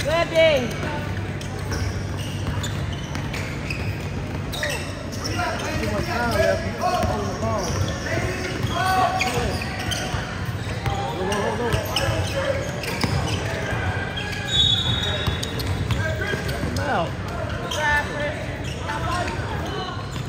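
Basketball being dribbled and bouncing on a hardwood gym court during a game, a run of repeated thuds, with players and spectators calling out around it in the gym.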